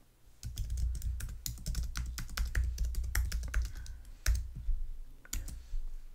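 Typing on a computer keyboard: a quick run of key clicks that pauses briefly about four seconds in, then thins out near the end.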